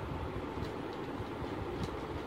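Steady whooshing background noise with a fluctuating low rumble, like a fan or air moving over the microphone, with a few faint light clicks.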